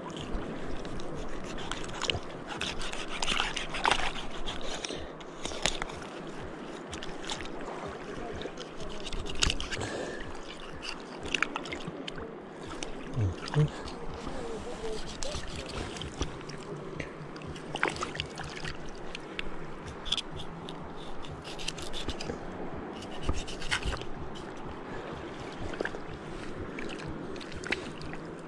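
Knife cutting and scraping at a freshly caught tuna's gills to bleed it, with wet handling, splashing water and scattered small knocks throughout.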